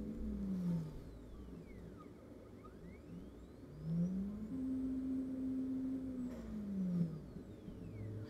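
Anycubic Photon M3 Max Z-axis stepper motor driving the build-plate gantry on its lead screw in a 10 mm jog, twice: its whine rises in pitch as it speeds up, holds, then falls as it slows to a stop. One short move ends just under a second in, and a longer one runs from about three and a half to seven seconds. This is a test run of the newly replaced Z-axis motor, and it is working.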